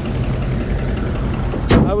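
The hood of a 2005 Ford F-250 pickup being slammed shut: one loud thud near the end, over a steady low rumble.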